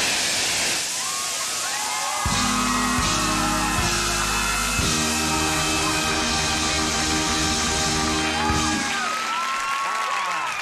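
A CO2 fire extinguisher discharging in a loud hiss while an audience cheers and whoops. About two seconds in, loud band music with sustained chords comes in over it and stops near the end.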